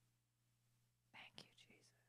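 Near silence with a faint steady hum, then about a second in a short whispered phrase into a close handheld microphone.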